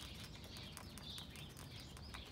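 Faint background with small birds chirping in the distance, a few short high chirps over a low steady hum.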